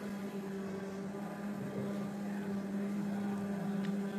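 Electric forklift running with a steady, even electric hum while it carries its load, and a short click near the end.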